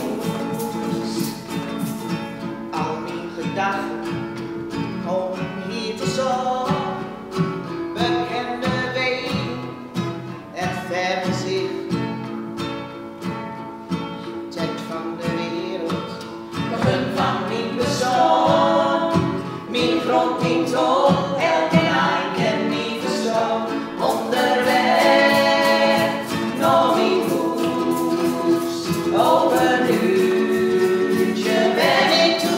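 Three women's voices singing a song together in harmony, accompanied by a strummed ukulele; the singing grows fuller and louder past the middle.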